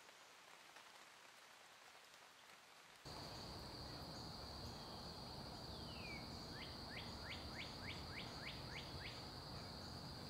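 A faint steady hiss, then from about three seconds in an outdoor nature ambience: a steady high-pitched insect drone, with a bird giving one descending whistle followed by a run of about ten quick downward chirps, roughly four a second.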